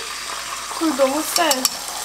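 Beaten egg pouring into a hot frying pan, sizzling steadily as it starts to fry. A few sharp clicks come about a second and a half in.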